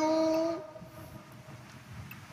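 A priest's chanted "Let us pray", its last syllable held on one steady note for about half a second, then a pause of faint room tone.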